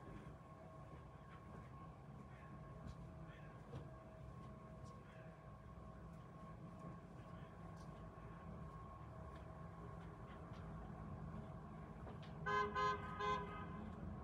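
Faint, steady rumble of distant street traffic, then a car horn sounding three short toots near the end.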